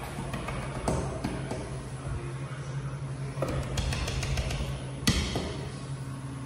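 Elevator lobby with a steady low hum, broken by scattered clicks and knocks. The loudest is a sharp knock about five seconds in, while the elevator is being called.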